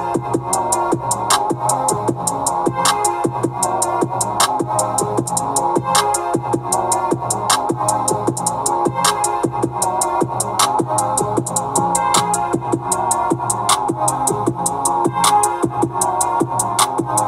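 Background music with a steady beat of evenly spaced sharp ticks over pitched tones.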